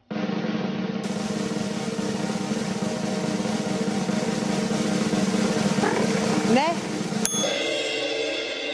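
Drum roll held steadily for about seven seconds, ending in a cymbal crash that rings on.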